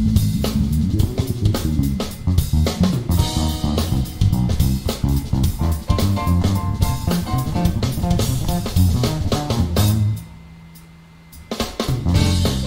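Live jazz fusion band playing, with a busy drum kit and electric bass guitar. About ten seconds in the band stops suddenly and only one low held note remains, then the full band comes back in near the end.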